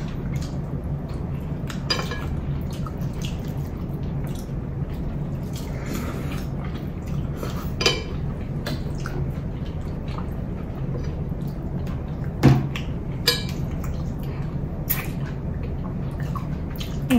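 Quiet eating by hand from ceramic plates: scattered light clicks and taps of fingers and food against the plates, the sharpest about twelve and a half seconds in, over a steady low hum.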